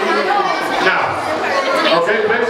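Many voices chattering and talking over one another, steady throughout with no single voice standing out.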